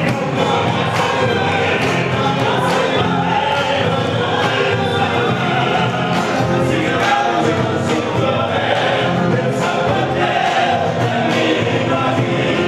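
Live Argentine folk group singing in chorus over their instruments, with a bombo legüero drum keeping a steady beat, amplified through the hall's loudspeakers.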